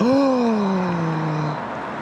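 A man's long, drawn-out 'ohhh' of dismay, sliding down in pitch and fading over about a second and a half: a groan at losing a hooked carp that has just come off the line.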